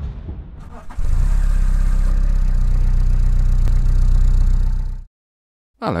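A car engine running steadily, coming in suddenly about a second in and cutting off abruptly about four seconds later.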